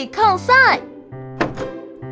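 Cheerful children's cartoon music with a cartoon voice calling out near the start, then a single thunk about one and a half seconds in: a cartoon house door bumping open.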